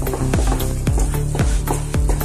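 Background music with a steady beat and bass notes that slide down in pitch about twice a second.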